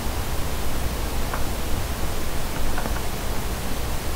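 Steady microphone hiss with a low hum underneath, and a couple of faint ticks.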